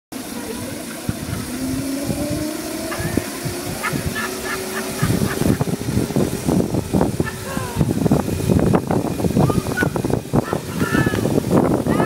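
Small electric motors of ride-on motorized coolers whining, with one tone slowly rising in pitch over the first few seconds. From about five seconds in, a rattling, rushing noise takes over, with indistinct voices.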